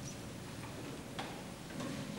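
Quiet hall hiss with two light clicks, the harp not yet playing.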